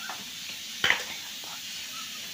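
Steady hiss of a pot of beans cooking in the background, with a single sharp knock about a second in.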